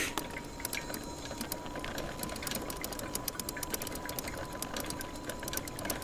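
Electric trike's motor whining at one steady pitch while riding, with a patter of small clicks and a low rumble from the tyres rolling over rough pavement.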